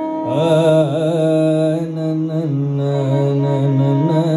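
Carnatic alapana in raga Simhendramadhyamam: a male voice sings long held notes with oscillating ornaments, shadowed by a violin. The melody starts about a third of a second in and settles onto a lower sustained note around halfway.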